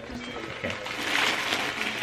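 Paper and cardboard rustling as a gift box is opened by hand, growing busier about a second in.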